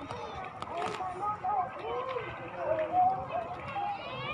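Indistinct voices of people talking and calling out at a distance, fairly high-pitched, with no clear words, over a steady outdoor background hum.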